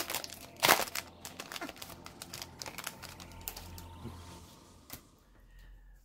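Foil booster-pack wrapper crinkling as the cards are pulled out of it, with two sharp crackles in the first second. Softer rustling follows, then dies away near the end.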